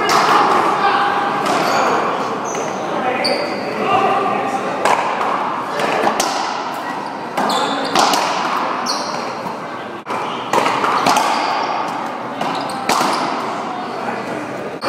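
One-wall racquetball rally: the ball cracks off racquets and the front wall at irregular intervals, each hit echoing in the hall. Sneakers squeak on the court floor between the hits.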